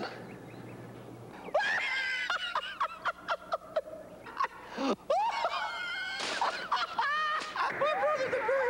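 A man laughing hard in quick, high-pitched peals, starting about a second and a half in and running on in short repeated bursts.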